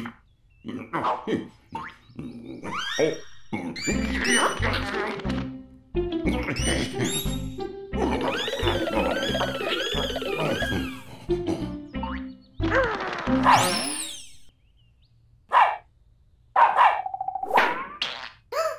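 Cartoon soundtrack: playful music over a bouncing bass beat, with comic sound effects of springy boings, sliding whistles and quick thunks. It breaks off to a short lull about three-quarters of the way through, then a few sharp effects follow near the end.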